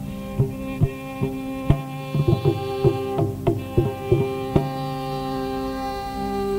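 Single mridangam strokes at an irregular pace over a steady sustained drone, as the instruments are checked and tuned before the concert piece begins. The strokes stop about four and a half seconds in, leaving only the drone.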